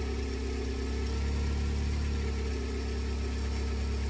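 A 1.9-litre 16-valve four-cylinder engine with Bosch K-Jetronic fuel injection idling steadily at operating temperature.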